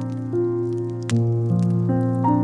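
Slow, soft piano music, with new notes or chords struck about every second and left to ring. Scattered small pops of a crackling wood fire sound under it, the sharpest about a second in.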